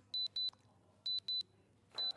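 Electronic countdown beeps: two pairs of short, high-pitched beeps about a second apart, ticking down to a price reveal.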